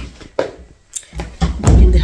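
A few light knocks, then a heavier low thump near the end, with brief scraps of a woman's voice in between.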